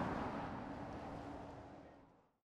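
Truck and road traffic noise, an even rush of tyres and engine, fading steadily and ending near the close.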